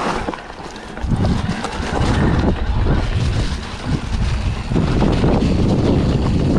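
Mountain bike's knobby Maxxis tyres rolling over a dirt trail with a low rumble, with scattered knocks and rattles over bumps and wind buffeting the camera microphone. Slightly quieter briefly near the start, then louder from about a second in.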